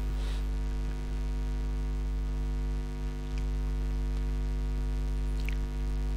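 Steady electrical mains hum picked up on the recording: a constant low buzz with a stack of overtones that does not change.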